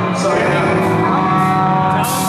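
Rock band playing live: loud, sustained distorted electric guitar chords with a vocal over them.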